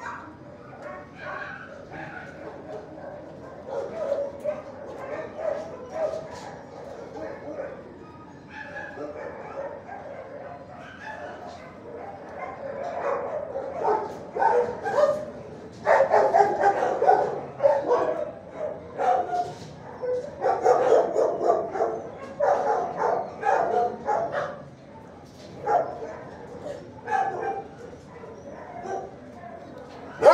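Dogs barking and yipping in a shelter kennel block, in repeated bursts that grow louder and denser about halfway through.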